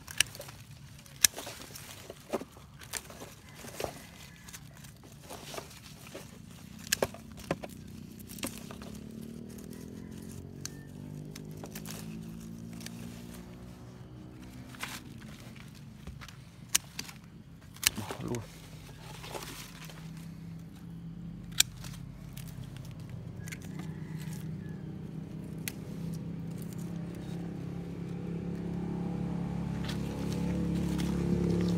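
Hand pruning shears snipping small branches from a fig trunk: a series of sharp clicks, most frequent in the first several seconds. A motor hums in the background; its pitch glides up and down midway, then it runs steadier and louder toward the end.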